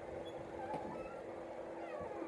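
Quiet room with a steady low hum and a few faint, distant high calls that glide in pitch.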